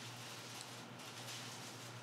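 Quiet background room tone between words: a faint steady low hum with light hiss.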